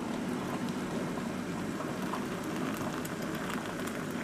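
Hot water poured steadily from an electric kettle into a mug through a mesh tea infuser holding loose black tea.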